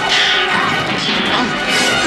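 Film fight-scene sound: sword blades clashing several times, each strike ringing metallically, over a dramatic film score.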